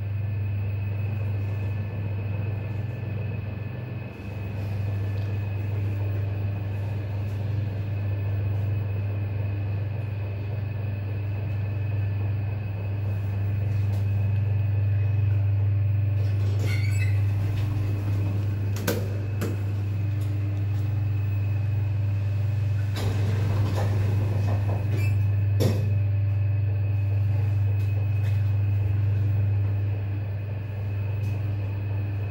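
Schindler elevator car travelling between basement floors, heard inside the cab as a steady low hum with a few short clicks and knocks in the second half as it stops and sets off again.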